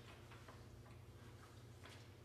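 Faint, irregular ticks and taps of a marker writing on a whiteboard, over a steady low room hum.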